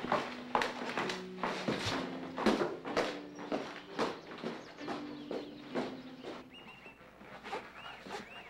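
Footsteps of men climbing a wooden staircase: a steady run of hard-soled steps, about two a second, growing softer near the end.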